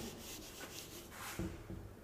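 A handheld whiteboard eraser wiping marker writing off a whiteboard: a faint rubbing.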